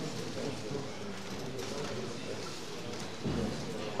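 Background chatter of spectators and officials in a large gym hall: an indistinct, steady murmur of voices.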